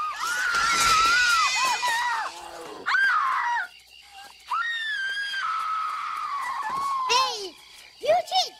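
A woman's high-pitched screams from a film soundtrack: several long screams, the loudest about a second in, with a short break about halfway through and the last one trailing off near the end.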